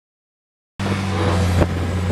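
Silence, then about three-quarters of a second in, a steady engine hum starts abruptly, with a rush of noise over it.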